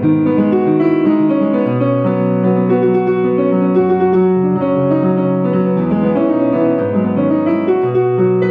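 Solo piano played with both hands: chords over held bass notes, in a continuous, steady passage.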